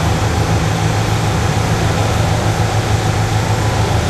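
Aston Martin DB9's V12 idling steadily, a low even hum.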